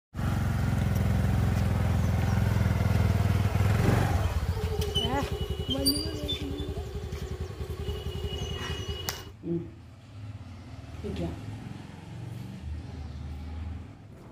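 A motor scooter's small engine running close by with a steady low hum and a person's voice over it; the hum gives way to a fast even pulsing about four seconds in. The sound cuts off suddenly about nine seconds in, leaving quieter sounds.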